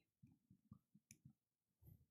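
Near silence, with a few very faint soft taps of a pen writing on an interactive whiteboard.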